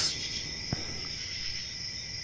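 Crickets chirping steadily in the background, with one faint click about three quarters of a second in.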